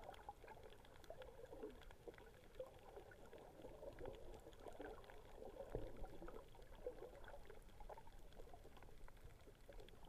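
Faint, muffled underwater sound through an action camera's waterproof housing: irregular gurgling and bubbling of water with scattered small clicks and crackles.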